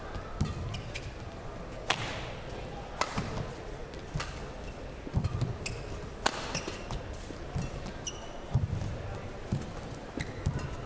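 A badminton rally: sharp cracks of rackets striking the shuttlecock about once a second, in turn from each player. Between the strokes come thuds of footwork and lunges and brief squeaks of shoes on the court mat.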